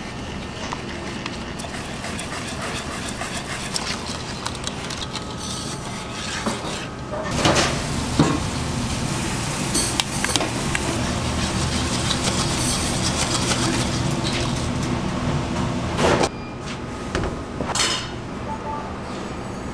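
Custard cream being made in a copper bowl: a wire whisk stirring and scraping against the bowl, then the bowl heating on a commercial gas burner, with a steadier, fuller burner noise in the second half. Several sharp knocks of utensils on the copper bowl come through it.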